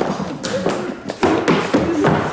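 Rapid, irregular knocking and thumping, about three or four blows a second, like a hand banging on a table, with short vocal noises between the blows.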